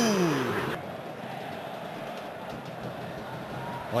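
A commentator's drawn-out exclamation sliding down in pitch, cut off abruptly under a second in. Then a steady stadium crowd murmur from a football television broadcast.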